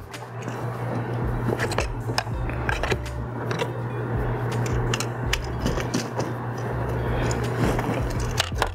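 Scattered small clicks and light scrapes of a wall receptacle and its wires being handled against a metal electrical box, over a steady low hum.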